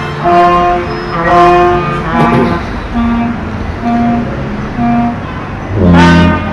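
A Basque txaranga brass band playing: short held brass chords come roughly once a second, and a loud low tuba note enters near the end.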